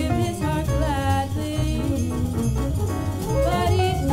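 Live jazz group playing a bossa nova, with a woman singing over piano, bass and drums.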